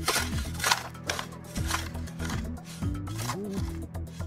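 Cartoon digging sound effects: a run of quick, irregular shovel strikes into the ground, over background music with a sliding bass line.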